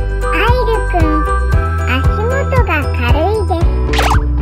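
Cheerful children's-style background music with a jingly, bell-like sound and a steady beat, with a high-pitched voice over it.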